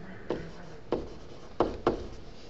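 A stylus writing on a tablet screen, with four short, sharp taps as the pen tip strikes the surface.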